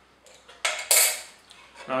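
A small steel spanner clinking and clattering against the planer's metal cutter block and table as it comes off the blade's locking bolts after tightening, with a light knock at about half a second in and a louder, bright metallic clatter about a second in.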